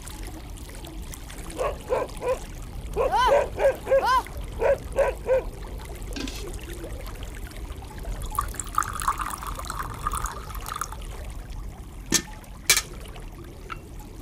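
Tea poured from a pot into a small glass, a steady trickle lasting a couple of seconds, followed by two sharp clinks of glass and saucer. Earlier, an animal calls in a quick run of short cries.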